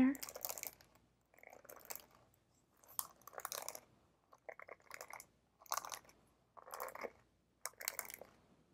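Bristle hairbrush drawn through long hair close to a clip-on microphone, in a series of separate strokes about one a second.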